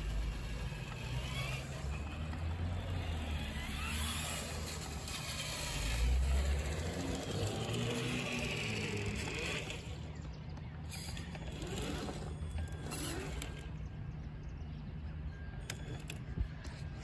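Traxxas TRX-4 Sport RC crawler's electric motor and geared drivetrain whining as it drives, the pitch rising and falling with the throttle, softer after about ten seconds.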